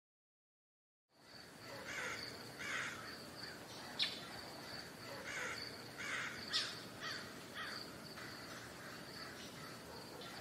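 Outdoor dusk ambience fading in about a second in: birds calling again and again over a steady high insect drone, with a couple of sharper short chirps.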